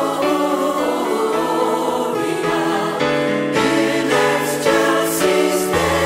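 A choir singing a Portuguese-language Christmas song over instrumental backing, in sustained chords.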